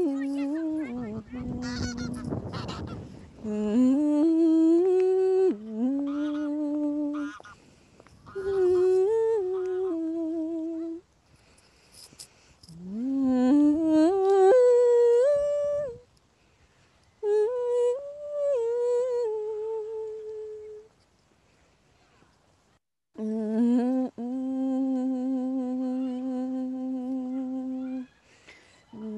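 A woman's voice singing wordless phrases unaccompanied, sliding up into notes and holding them, with short pauses between phrases and a long steady note near the end. A burst of low rumbling noise comes about a second in.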